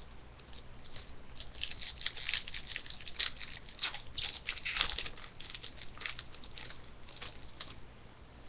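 Foil wrapper of a hockey card pack being torn open and crinkled by hand: a quick run of crackles from about a second and a half in, thickest in the middle and thinning out near the end.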